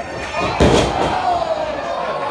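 A wrestler slammed down onto the ring canvas: one loud thud about half a second in, with the crowd's shouting around it.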